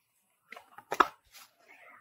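Tarot cards being handled to draw a clarifier: a few faint clicks and soft rustling about halfway through, after a near-silent start.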